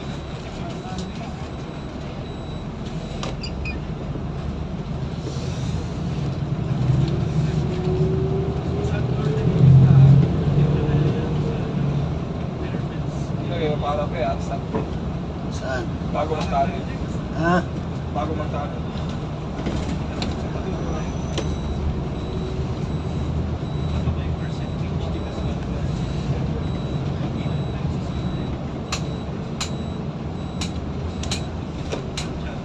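Engine and road noise of a moving vehicle heard from inside the cabin. The engine note rises and swells to its loudest about ten seconds in, then settles back to a steady run.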